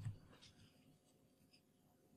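Near silence: room tone, with a brief faint low sound at the very start and a couple of very faint ticks.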